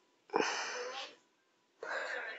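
A person's breath or whisper close to the microphone: one short, breathy burst lasting about a second.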